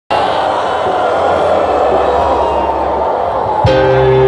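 Live metal concert heard from the crowd: the audience's noise mixed with the band's intro. About three and a half seconds in, a loud sustained chord comes in with a sudden attack.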